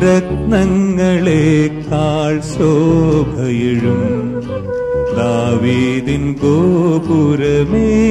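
Malayalam Christian devotional song music: a melody with vibrato over steady bass and accompaniment, with one note held about five seconds in.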